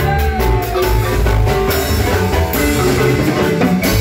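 Marimba band playing a dance tune live: wooden marimba struck with mallets, over electronic keyboards and a steady beat. The bass drops out briefly near the end.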